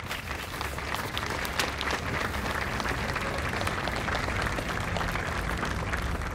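Crowd applauding: a steady patter of many hands clapping that sets in at once and holds, easing off near the end.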